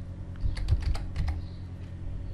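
Computer keyboard keystrokes: a quick run of key clicks starting about half a second in, as a word is typed.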